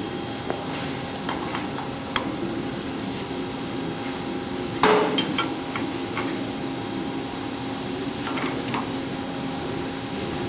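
Steady hum from a profile bending machine, with a few light metallic clicks and one loud metal clank about five seconds in as the side guide assembly is adjusted to take camber out of the rolled angle.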